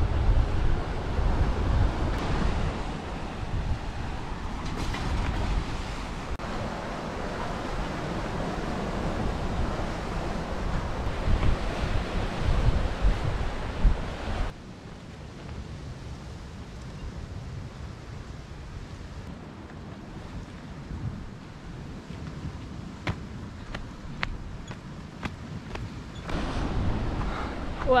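Wind buffeting the microphone over sea surf breaking on a rocky shore, loud and rumbling for the first half. About halfway it drops suddenly to a quieter, steady hiss of surf with a few faint clicks.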